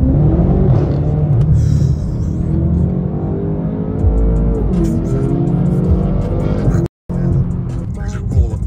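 Car engine heard from inside the cabin while driving, its pitch falling and rising as the car slows and accelerates, with music playing over it. The sound cuts out for an instant near the end.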